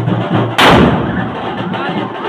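A firecracker going off with one loud, sharp bang about half a second in, over drum-led band music with a steady beat.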